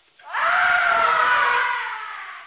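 A kendo fighter's kiai: one loud, long shout that swoops up in pitch as it starts, is held for about a second and a half, then fades away.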